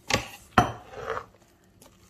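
Metal spoon stirring a thick mix of chopped vegetables and gram-flour batter in a large metal pot. The spoon knocks against the pot twice, near the start and about half a second in, each knock followed by a short scrape through the mix.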